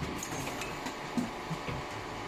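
Steady hum of a can-filling machine, with a few short clunks of metal paint cans knocking on a steel roller conveyor.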